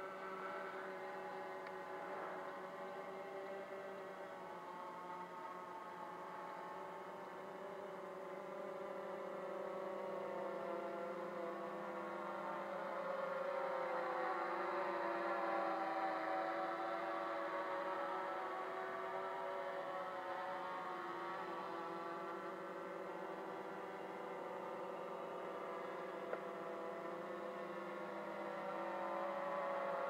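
Ideafly MARS 350 quadcopter's motors and propellers buzzing as it flies circles on its own in circle mode. The hum holds several tones that drift slowly in pitch, and it swells to its loudest about halfway through before easing off again.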